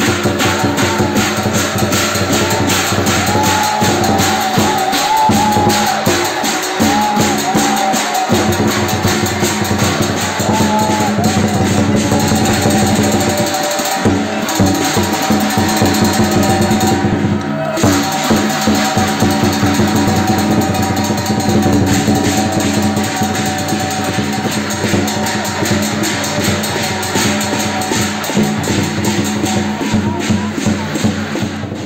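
Traditional Chinese percussion band of drum, large hand cymbals and gong, playing a loud, fast, unbroken beat for a qilin dance.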